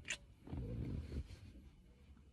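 A short, sharp lip smack of a kiss right at the start. About half a second later comes a low, muffled rustle of movement lasting under a second.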